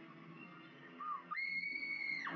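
Horror film trailer soundtrack: faint low music, then about a second in a short rising-and-falling note, followed by a shrill, high tone that jumps in and holds steady.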